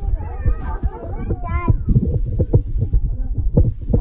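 Restaurant chatter: several voices over a steady low hum and repeated low thumps, with a high, wavering voice about a second and a half in.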